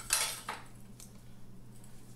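Metal clinking and scraping as a steel exhaust header pipe and a hand tool are worked loose from a motorcycle engine: a burst of clatter right at the start, then a single sharp click about a second in.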